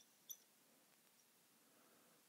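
Near silence, with one short, faint squeak of a marker on a whiteboard about a third of a second in.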